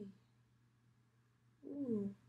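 A woman humming a closed-mouth "mm": the end of a long, wavering hum right at the start, then a short "mm" falling in pitch near the end.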